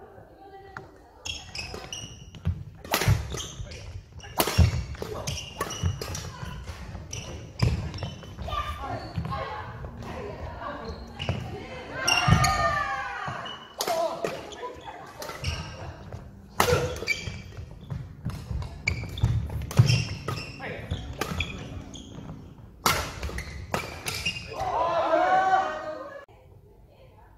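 Badminton doubles rally in a large hall: repeated sharp racket strikes on the shuttlecock and thuds of footfalls on the wooden court floor, with short shouts among the players.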